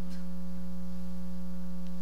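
Steady electrical hum in the audio feed: one low tone with a row of fainter overtones above it, unchanging throughout.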